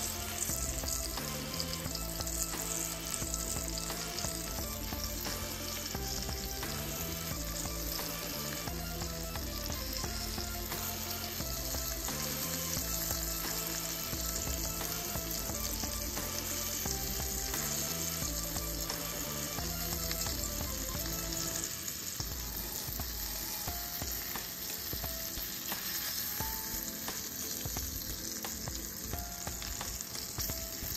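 Breaded sheepshead fillets sizzling steadily as they pan-fry in olive oil in a skillet.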